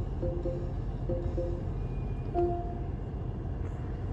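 Lexus NX 300h's petrol engine running at idle in the parked car to charge the hybrid battery, a low steady hum inside the cabin. Faint music from the car radio plays over it, and a short electronic beep sounds about two and a half seconds in.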